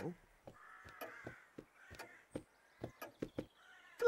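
Quiet, irregular footsteps with a faint crow cawing in the background, about a second in and again just past two seconds.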